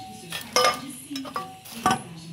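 Metal engine parts clinking and knocking as they are handled, four or so sharp clinks with a brief metallic ring, the sharpest near the end.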